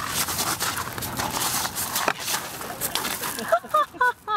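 Rough outdoor noise with knocks and scuffing as a man is thrown off a seesaw onto gravel, with a sharper knock about halfway through. Short, high-pitched vocal cries follow near the end.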